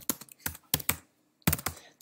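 Typing on a computer keyboard: a quick run of key clicks, a pause of about half a second, then a few more keystrokes.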